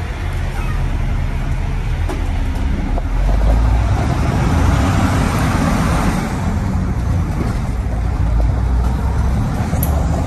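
Cummins 855 Big Cam six-cylinder diesel of a 1983 Crown tandem bus running as the bus drives, heard from inside the cab with a heavy low rumble. It gets louder about three seconds in.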